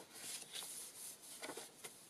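Faint rustle of paper as a page of a handmade junk journal is turned by hand, with a few light taps and brushes of paper against paper.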